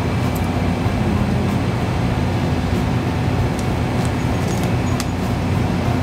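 Steady low hum and rumble of convenience-store background noise at the counter, with a few faint ticks scattered through it.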